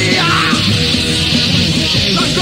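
Hardcore punk band playing on a lo-fi cassette demo recording: distorted electric guitar, bass and drums in a loud, dense, unbroken wall of sound, with a shouted vocal near the start.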